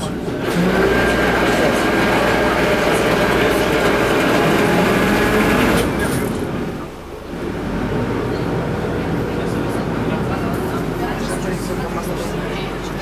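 Canal tour boat's engine running steadily, heard from inside the glass-roofed passenger cabin, with a brief dip about seven seconds in.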